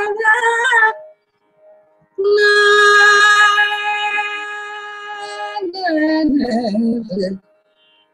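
A woman singing Carnatic raga phrases unaccompanied. A gliding ornamented phrase comes first, then a short pause and a long held note of about three seconds, then a falling ornamented phrase that breaks off shortly before the end.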